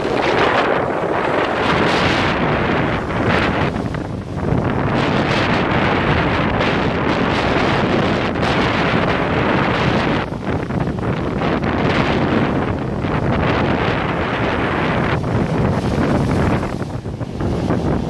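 Rough sea surf crashing and churning over rocks, a continuous loud wash that surges and eases, with strong wind buffeting the microphone.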